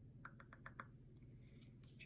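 Near silence: room tone with a few faint light clicks in the first second.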